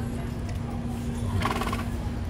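A horse gives a brief, pitched call about one and a half seconds in, over a steady low rumble of street background.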